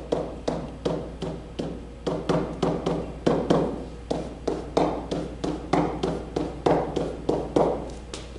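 A pen tapping and knocking on the surface of an interactive whiteboard as letters and brackets are written, in an uneven run of sharp taps about two to three a second.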